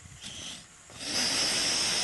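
A rocket motor mounted on a canoe igniting: a brief faint hiss, then about a second in it lights and burns with a loud, steady hiss.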